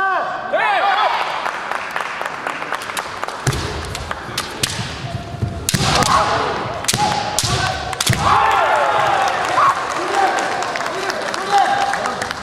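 Kendo bout: fencers' long kiai shouts, sharp cracks of bamboo shinai striking each other and the armour, and thuds of stamping feet on a wooden floor. The cracks come thickest in the middle, with shouts near the start and again later.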